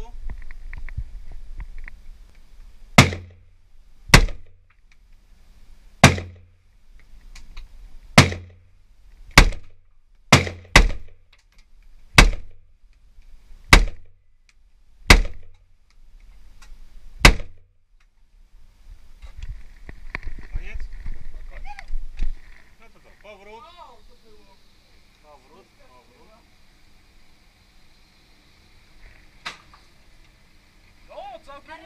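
Semi-automatic carbine fired in single, deliberate shots in an indoor range: eleven sharp reports one to two seconds apart, each with a brief echo off the range walls, then a pause with handling noise.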